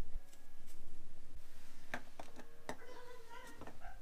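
A few light clicks and taps of small rod-building parts being handled, as a winding check is worked onto a graphite rod blank. The clicks are scattered, most of them in the second half.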